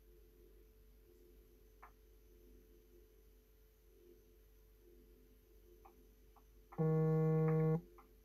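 Open phone line with faint steady hum and a few soft clicks, then a loud buzzing tone lasting about a second near the end.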